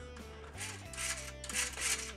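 Soft background music of held notes, with light rubbing and scraping as hands turn the steering and wheels of a toy RC forklift's plastic chassis.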